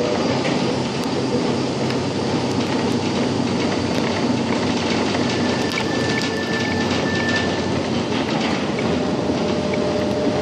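Budapest line 2 tram running along its track: a steady rolling rumble with scattered light clicks from the wheels and rails, and a faint high whine for a couple of seconds midway.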